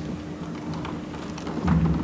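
Hall room tone through the public-address system, with a steady low hum and a few faint knocks. Near the end comes a low rumble of handling noise at the lectern microphone.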